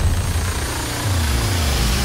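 Epic orchestral trailer music at a sparse break: the drums drop out, leaving a deep bass rumble with a low tone sliding downward in the second half.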